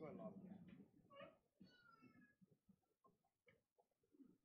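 Faint, distant voices in a quiet room, with a few short scattered sounds later on.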